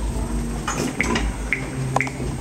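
Low rumble of a handheld camera being moved, with several short high squeaks about half a second apart.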